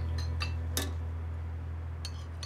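A metal ladle clinking against a soup pot and bowl as soup is served, with a few light clinks of cutlery and dishes. The sharpest knock comes just under a second in, over a low steady hum.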